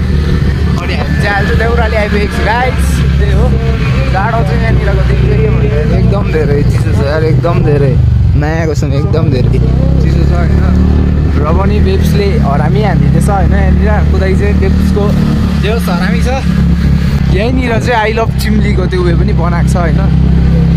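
Motor scooter being ridden, its engine and a steady low wind rumble on the microphone running throughout, with people's voices over it almost all the way through.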